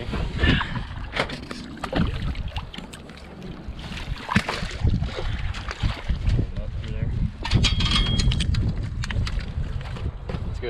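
A landing net holding a rainbow trout being worked in the lake water and hauled onto an aluminium pontoon boat: water splashing, with scattered sharp knocks and clatter of the net frame against the boat, under a steady rumble of wind on the microphone.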